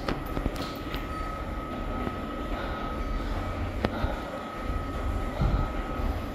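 Steady low mechanical rumble with a faint, steady high hum over it, and one sharp click about four seconds in.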